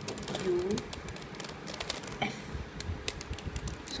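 A plastic 3×3 Rubik's cube being twisted by hand through an algorithm: a quick, irregular run of light clicks and clacks as its layers turn.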